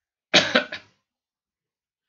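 A man's short cough about a third of a second in, in two quick parts.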